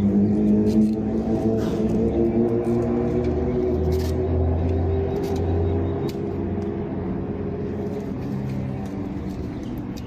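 Steady low drone of a running motor-vehicle engine, with a few faint clicks on top.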